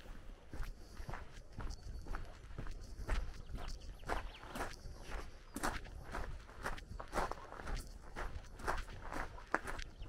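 Footsteps crunching on a gravel lane at a steady walking pace, about two steps a second.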